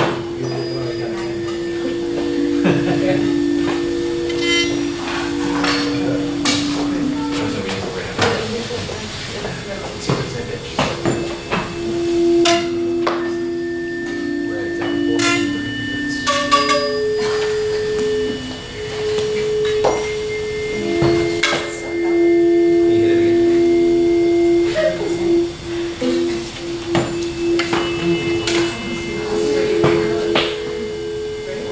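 Several tuning forks ringing at once: steady pure tones at a few different pitches that overlap, fade and start again as the forks are struck anew, with sharp taps from the strikes. The forks are held next to plastic tubes tuned to match, which resonate and make a fork louder only when its pitch matches the tube's.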